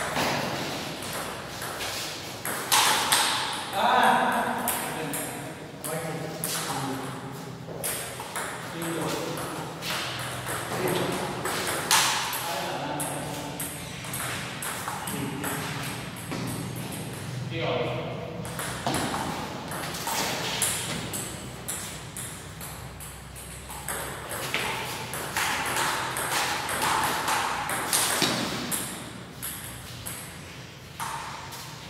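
Table tennis ball being hit back and forth in rallies: repeated sharp clicks of the ball on the bats and the table, in runs with short gaps between points.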